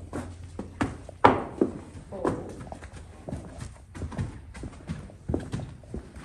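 Hooves of a Friesian/Clydesdale/Gypsy cross draft horse clip-clopping on a concrete barn aisle as he is led at a walk: an irregular run of knocks, the loudest about a second in.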